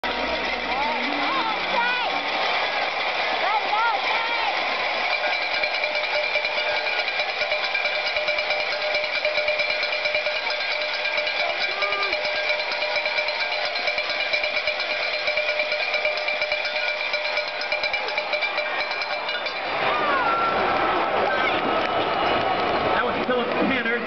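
Many handheld cowbells ringing in a stadium crowd, a dense, unbroken clanging mixed with crowd voices. About twenty seconds in, the crowd noise swells louder as the goal-line play is run.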